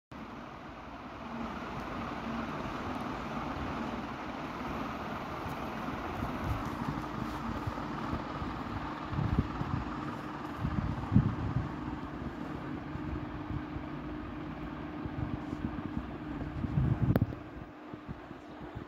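Steady background whir with a faint steady hum, broken by a few low thumps around the middle and again near the end.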